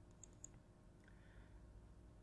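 Two faint computer mouse clicks close together, about a fifth of a second apart, otherwise near silence.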